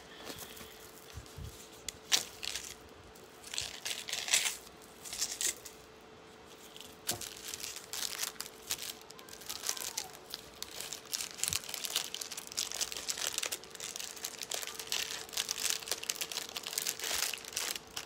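Close handling noise: irregular crinkling, rustling and small clicks, thickening after the first few seconds, over a faint steady hum.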